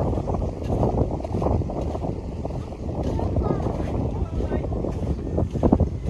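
Wind buffeting the microphone on an open lake shore, a fluctuating low rumble.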